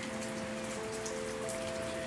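Rain falling steadily, with soft sustained music notes held underneath that shift pitch partway through.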